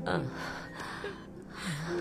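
A woman sobbing, with gasping in-breaths and short falling whimpers twice, over soft, held background music.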